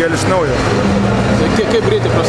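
A man talking, over steady background noise.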